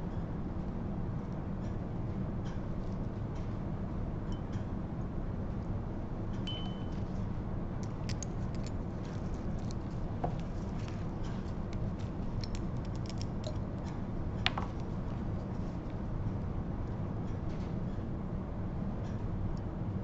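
Glass dropper bottles, droppers and a small glass beaker being handled: scattered faint clicks and taps, with one sharper, briefly ringing glass tap midway. A steady low hum runs underneath.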